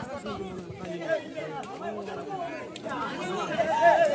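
Crowd of spectators at a kabaddi match, many voices talking and calling out at once, growing louder near the end.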